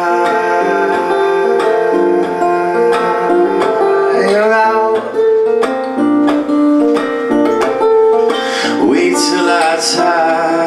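Acoustic guitar playing a steady pattern of picked chords in a live song, with a man's voice singing short phrases partway through and again near the end.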